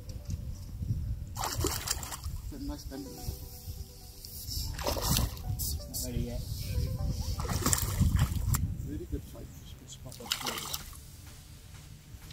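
A hooked trout splashing at the lake surface while being played on a fly rod: several separate splashes a few seconds apart. Wind buffets the microphone throughout as a steady low rumble.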